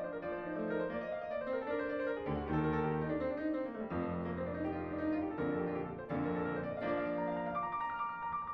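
Background piano music, a continuous run of notes.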